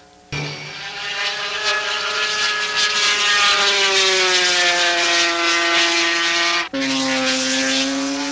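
Racing motorcycle engine running hard at high revs, a loud note that sinks slowly in pitch over several seconds. Near the end it cuts off abruptly into a second, steady and lower engine note.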